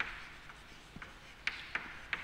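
Chalk writing on a blackboard: faint scratching strokes with a few sharp ticks as the chalk meets the board, at the start, about a second in and twice more around a second and a half.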